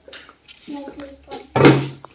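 Family voices at low level, then a loud vocal exclamation about one and a half seconds in.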